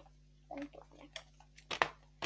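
Handling of a folded paper leaflet: a few faint rustles, then one sharp crackle near the end.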